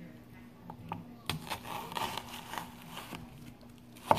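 A kitchen knife slicing slowly down through a red onion half on a cutting board: faint crisp crackling as the layers are cut, starting with a light tick about a second in.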